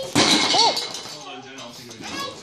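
A cardboard carton and its contents dropped to the floor: a loud clattering crash with clinks, lasting under a second, with a short vocal sound from the child in the middle of it.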